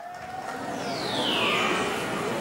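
Outro logo sting sound effect: a falling whoosh about a second in, over a noisy wash that builds in level.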